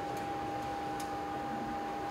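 Room tone with a steady high-pitched hum, and two faint ticks about a second apart.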